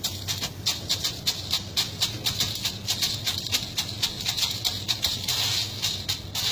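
Dry red beans rustling and clattering as hands rake and stir them in a metal tub: a quick run of sharp clicks, several a second, thickening into a denser rustle near the end.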